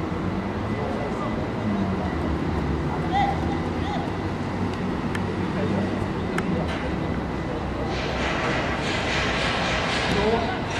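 Distant shouts of footballers calling out on the pitch over a steady low rumble, with a rushing noise coming up near the end.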